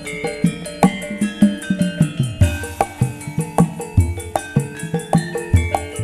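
Javanese gamelan ensemble playing a lively tayub-style piece: kendang barrel-drum strokes keep a steady, busy rhythm over the ringing notes of bronze metallophones and gongs.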